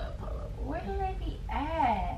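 A quiet voice saying a few indistinct words, twice, over a low steady rumble.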